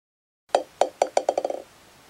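Sound effect of a ball bouncing: about ten bounces, the first the loudest, coming quicker and closer together until it settles.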